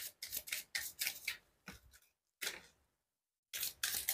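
Tarot deck being shuffled hand to hand: a run of soft card clicks and slaps, about five a second, that stops for about a second past the middle and then starts again.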